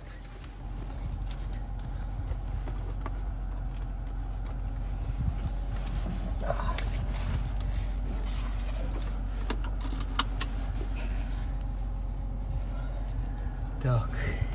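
Car idling with a steady low hum, heard from inside the cabin, with rattles and a few sharp clicks of a seatbelt being pulled out and buckled; the loudest click comes about ten seconds in.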